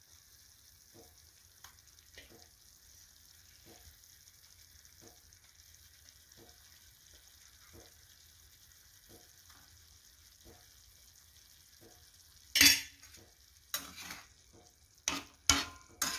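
Masala frying on a hot tawa, sizzling faintly with regular small pops. Near the end come several loud, sharp knocks of a utensil against the pan.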